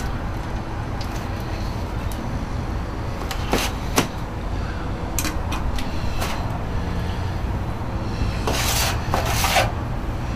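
Handling noise of a foam turn-in box and foil pan: a few sharp clicks, then a louder rustle near the end, over a steady low rumble.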